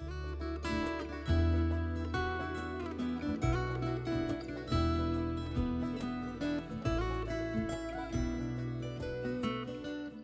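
Background music: plucked string notes over low bass notes that change every second or so.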